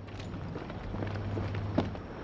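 A low steady hum with a few faint, light knocks, the clearest one near the end.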